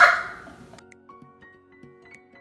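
A woman's laughter fades out in the first half-second, then the sound cuts abruptly to soft background music of sustained notes with light plucked notes.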